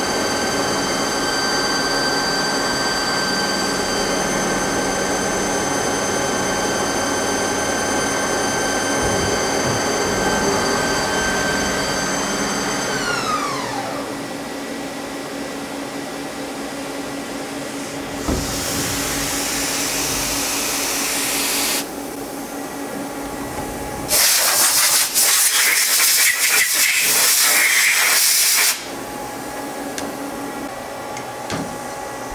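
Mazak lathe live-tooling milling holder, whose bearings are worn, spinning its endmill with a steady multi-tone whine, then winding down with falling pitch about halfway through. Later there is a few seconds of hiss, then a louder hissing rush for about four seconds.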